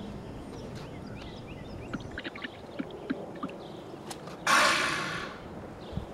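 Outdoor background with faint bird chirps and scattered light clicks, then a loud hiss lasting under a second about four and a half seconds in, fading away.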